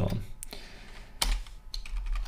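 A few scattered keystrokes on a computer keyboard: short separate clicks as code is typed.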